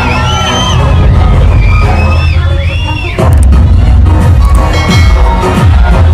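Dance music playing loud, a melody running over a heavy bass beat; the bass gets louder about three seconds in.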